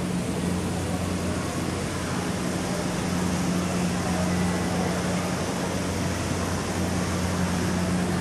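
Steady low hum under a constant hiss of background noise, with no distinct events.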